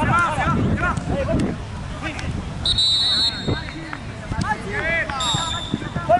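Referee's whistle blown in two short blasts, one about halfway through and one near the end, over players calling out on the pitch. A few sharp thuds of the ball being kicked come in between.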